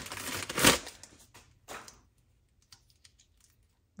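Thin plastic (CPE) packaging bag crinkling and rustling as a cable is pulled out of it, with a sharper crackle a little under a second in. The rustling dies away after about two seconds, leaving a few faint ticks.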